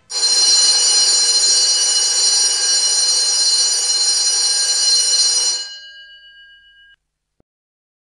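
An electric bell ringing continuously for about five and a half seconds, then stopping, its tones ringing on briefly as they fade.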